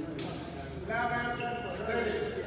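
Badminton rally on an indoor court: a sharp racket strike on the shuttlecock just after the start, then court shoes squeaking on the floor for under a second, twice, over spectators chatter in a large echoing hall.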